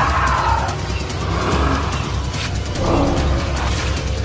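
Horror movie trailer soundtrack: dark music over a deep, steady low rumble, with scattered noisy effects.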